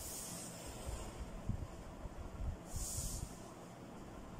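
A pen drawn along a metal ruler on pattern paper: two short scratchy strokes, one at the start and one about three seconds in, with faint knocks of the ruler and hands on the table.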